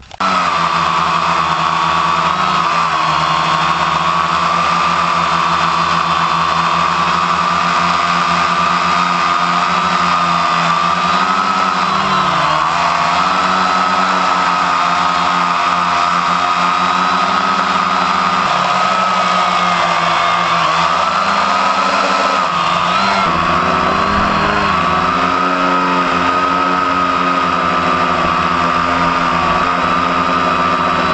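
Quadcopter's electric motors and propellers running close up: a loud, steady whine whose pitch wavers and dips several times as the throttle changes.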